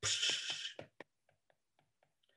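A stylus sketching quick strokes on a drawing tablet: a short scratchy hiss of under a second, then about four faint ticks.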